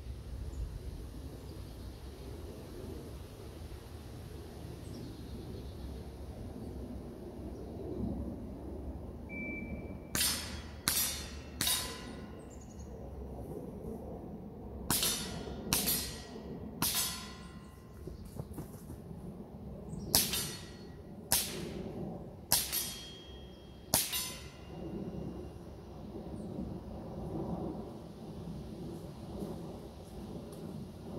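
Daisy 2003 CO2 blowback pellet pistol firing about ten sharp shots, roughly a second apart, in strings of three, three and four. Each crack has a brief metallic ring.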